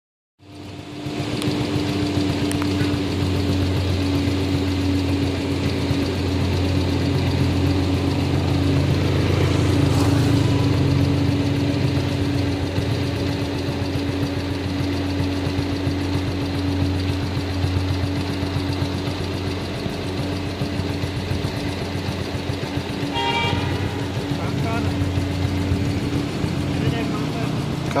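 Steady hum of a running vehicle engine, with a short vehicle horn toot about 23 seconds in.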